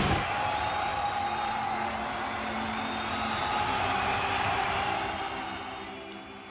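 Crowd hubbub from a large packed audience, a dense murmur with faint sustained tones underneath. It fades out over the last couple of seconds.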